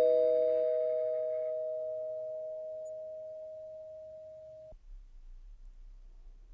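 Two-note electric doorbell chime, a higher tone then a lower one, ringing on and slowly fading until it cuts off suddenly about three-quarters of the way through, leaving faint room tone.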